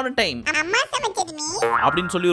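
Speech over background music, with a springy comic 'boing'-style sound effect that swoops down and back up about halfway through.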